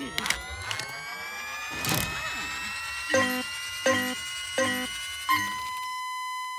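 Cartoon sound effects: a slowly rising whine with a few sharp hits, then four short electronic beeps about 0.7 s apart, the last held as one long steady tone.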